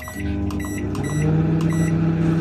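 Built-in microwave oven being started from its keypad: a button click, several short high beeps, then the oven's steady low running hum as it heats food that is still frozen.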